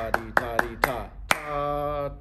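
Hand claps beating out a rhythm, with a man chanting takadimi counting syllables ("ta", "ta-dee") in time with them. The claps come quickly at first, then more spaced out, and there is one long held syllable in the second half.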